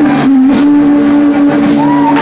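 Live rock band playing, with a singer holding one long, steady note over the band.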